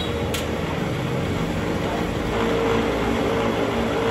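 Cotton candy machine running: its spinning head and motor give a steady hum and whirr over a noise haze, and a steady tone strengthens about halfway through. The machine runs smoothly and quietly.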